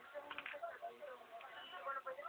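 Speech only: a woman talking in Spanish, heard through a television's speaker, thin and dull with no high frequencies.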